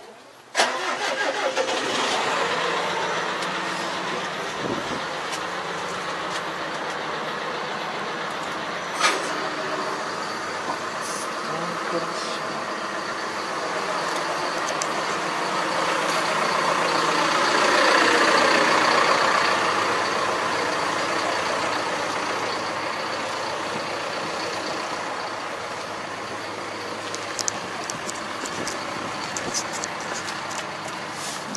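An engine running steadily, coming in suddenly about half a second in, growing louder toward the middle and easing back after.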